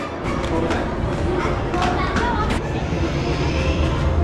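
People talking in the background, with music playing underneath.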